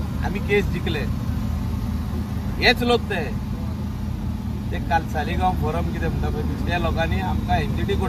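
An engine idling with a steady low rumble, under intermittent talking voices.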